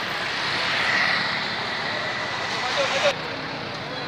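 Steady outdoor street noise: a crowd of people with indistinct voices, and traffic. The sound changes abruptly about three seconds in, where the upper hiss drops away.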